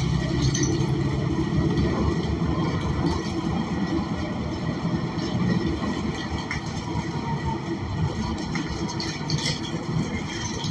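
Cabin noise of a New Flyer XN40 transit bus with a Cummins Westport ISL G natural-gas engine: a steady low engine drone and road rumble that eases off gradually, with a few light rattles near the end.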